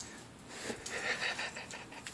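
Faint panting of a small dog carrying a ball back.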